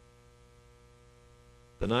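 Faint, steady electrical hum made of several even tones, heard in a pause in speech. A man's voice breaks in near the end.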